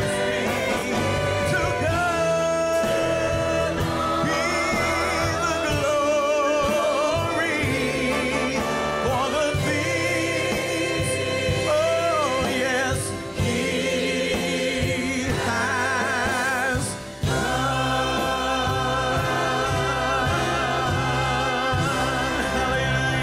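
Gospel choir and male soloist singing over a live band with drum kit, with long held notes sung with vibrato. The music drops back briefly twice, about 13 and 17 seconds in.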